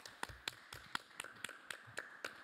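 Light applause from a few people clapping: sharp, separate claps, about four a second.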